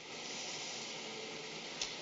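Steady hiss of the old soundtrack's background noise, with a faint held tone coming in about halfway through and a small click near the end.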